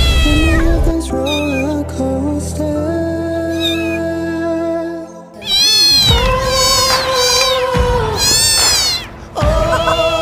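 Cat meowing over background music. A falling meow ends just after the start, then the music holds steady notes alone, and from about halfway through comes a run of repeated meows over the music.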